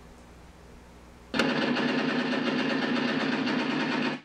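Model Sounds Inc Shockwave sound system playing its simulated machine-gun effect through the model's speaker: it starts abruptly about a second in, runs loud and steady, louder than the system's engine sound, and cuts off suddenly near the end. A faint low hum comes before it.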